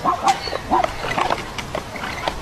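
An animal giving a quick run of short barking calls, several in two seconds.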